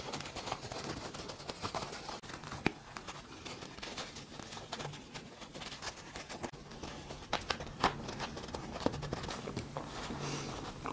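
Fabric rustling and crinkling in the hands as a small sewn coin purse is turned right side out, with faint irregular clicks and a few sharper ticks.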